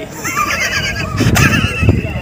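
A person laughing in high, wavering peals, over a low rumble.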